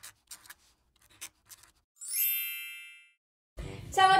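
Pen-on-paper scribbling sound effect, a run of short scratchy strokes, then a single bright chime that rings out and fades over about a second. Near the end, a new sound begins.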